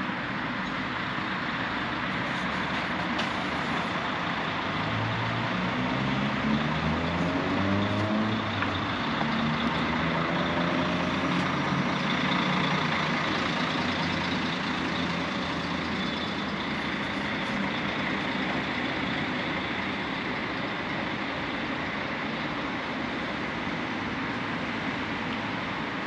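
Steady city traffic noise, with a coach bus's engine passing close by, its pitch rising in steps as it accelerates between about five and thirteen seconds in.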